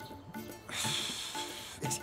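Background music under a man's long, breathy exhale of about a second, starting a little before the middle, the heavy breathing of physical strain.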